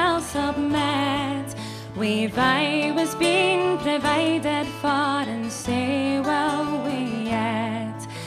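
Slow Scottish folk song performed live: a woman singing over instrumental accompaniment, with held low notes underneath and a wavering melody line with vibrato.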